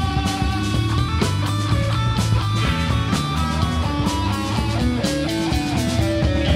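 Live rock band playing: electric guitars over bass guitar and a drum kit.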